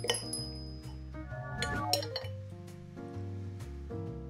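Background music with metal cutlery clinking against a ceramic plate: a sharp, briefly ringing clink at the start and another about two seconds in.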